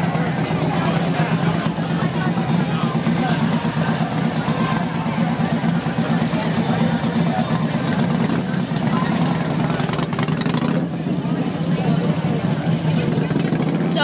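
Large touring motorcycle engine idling steadily, a continuous low pulsing rumble, with a crowd talking.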